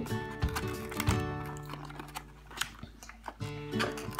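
Background music of sustained held tones, with a few short sharp clicks as hands work at a snack cup's cardboard-and-plastic packaging.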